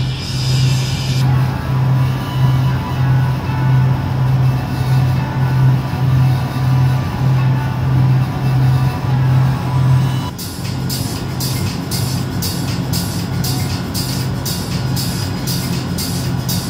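Background music with a steady, pulsing bass beat; about ten seconds in the bass drops back and a fast, regular hi-hat-like ticking takes over.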